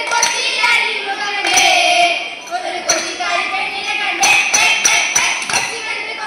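A group of girls singing a Malayalam folk song (naadan paattu) together, with held notes, and sharp hand claps beating time, more of them in the second half.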